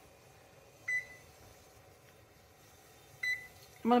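Two short electronic beeps from a gas range's touch control panel, about two and a half seconds apart, as its kitchen timer is being set to two minutes.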